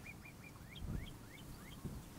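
A bird singing a series of short whistled notes that turn into quick rising slurs about half a second in, roughly four a second.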